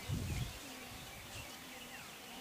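Faint outdoor ambience with scattered short bird chirps, and a brief low rumble at the very start.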